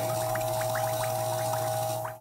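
Background sound bed: a steady hum with a string of soft, quick blips, about four a second.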